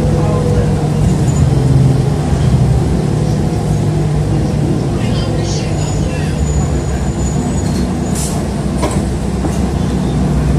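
City transit bus running steadily, heard from inside the passenger cabin as a continuous low engine drone. A few brief high squeaks come about halfway through, and a couple of clicks near the end.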